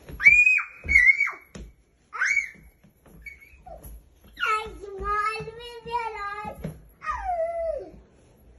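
Two toddlers squealing and shrieking: short, very high squeals in the first couple of seconds, a long wavering wordless cry lasting about two seconds from about four and a half seconds in, and a falling call near the end.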